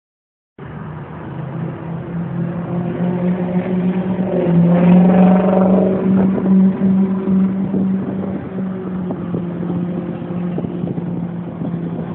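Vehicle engine running steadily, swelling louder with a brief rise and fall in pitch about five seconds in.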